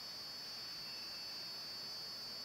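Quiet room tone: a steady low hiss with a faint, steady high-pitched whine and no distinct events.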